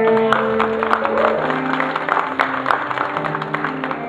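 Audience clapping over a jazz big band that keeps playing, its held saxophone and brass notes running underneath. The applause greets the end of a saxophone solo.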